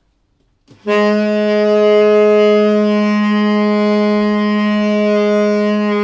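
Tenor saxophone holding one long, steady low note that starts after near silence about a second in.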